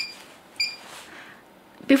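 Two short, high electronic beeps about half a second apart from the touch screen of a shockwave therapy machine as its buttons are tapped.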